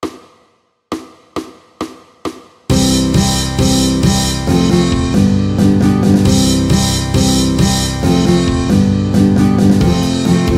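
Ukulele backing track: a ringing strummed chord, then four short muted hits in tempo as a count-in. About three seconds in, the full band comes in loud, with drum kit, bass and ukulele strumming the C–F–G intro of a Chinese New Year pop song.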